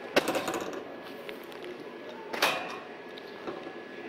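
Two sharp knocks or clicks about two seconds apart, over a steady background hum with a faint high tone: handling noise while browsing a store aisle.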